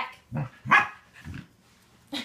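A dog barking: three short barks within about a second, the middle one the loudest.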